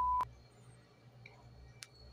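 A steady, high single-pitch test-tone beep of the kind played with colour bars, cut off with a click just after the start. Then a faint low hum, with one small click near the end.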